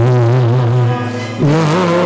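A man's voice singing long held notes with vibrato through a microphone over a steady held chord; the note shifts up about one and a half seconds in.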